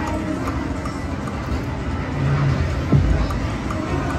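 Ultimate Fire Link Explosion video slot machine playing its game music and spinning-reel sounds as the reels spin and stop, with a sharp thump about three seconds in.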